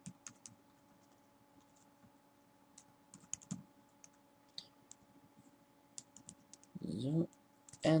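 Computer keyboard keystrokes, irregular and spaced out, as a run of capital letters is typed, over a faint steady hum.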